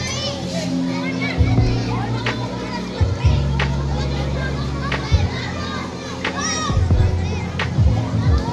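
Crowd of children shouting and calling while playing at a swimming pool, over music with a steady bass line. A few sharp knocks cut through now and then.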